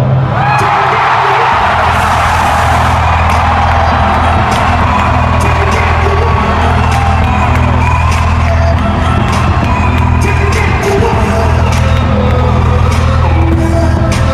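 Loud music over an arena's PA system with a heavy, steady bass, and a crowd cheering and whooping over it. The cheering swells just after the start.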